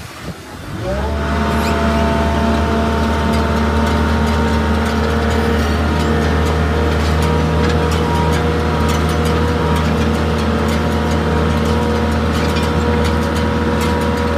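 A loader's engine starts about a second in, its pitch rising and then settling into a steady run. Sharp clicks and ticks are scattered over it.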